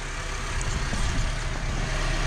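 A steady low mechanical hum under an even rushing noise, the sound of a handheld camera being moved around.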